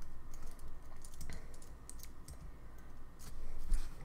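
Typing on a computer keyboard: a run of irregular keystroke clicks as text is entered into a web form.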